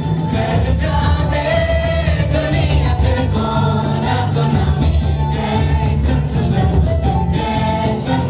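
Live praise-and-worship music from a band with a strong bass and a steady beat, with a group of voices singing.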